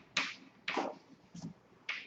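Chalk writing on a chalkboard: about four short, sharp taps and scrapes of the chalk stick as letters are written, with brief pauses between strokes.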